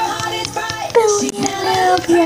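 A pop song playing with a child singing along, one note held from about halfway through.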